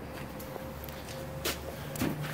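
Low steady background hum with a faint thin steady tone above it, and one soft click about one and a half seconds in.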